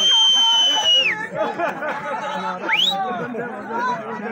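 Crowd chatter with a loud, shrill whistle that rises, holds one steady pitch for about a second and drops away, then a second short upward whistle about three seconds in.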